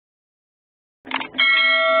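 Subscribe-button animation sound effects: silence, then a short effect about a second in, then a notification bell ringing with a steady tone.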